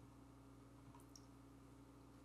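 Near silence: room tone with a steady low hum and a couple of very faint ticks about a second in.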